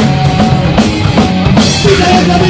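Live Oi! punk band playing loudly, with the drum kit to the fore over sustained bass and guitar notes and a cymbal crash near the end.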